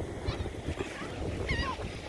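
Wind buffeting the microphone, with a couple of faint, short gull calls about a second and a half in.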